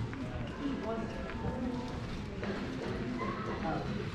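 Indistinct voices and footsteps in a shopping mall corridor: low conversation that can't be made out, over a steady murmur of mall background noise.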